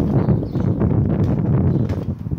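Children bouncing on a trampoline: a steady run of soft thuds on the mat, under a low rumble of wind on the microphone.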